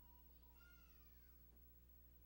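Near silence: room tone with a steady low hum, and one faint, short, high-pitched wavering cry about half a second in.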